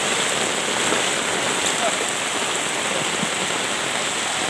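Heavy tropical rain pouring down onto a flooded street: a steady, even hiss of rain.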